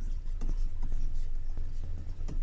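A stylus writing on a drawing tablet: short, light ticks and scratches as letters of a title are handwritten, over a low steady hum.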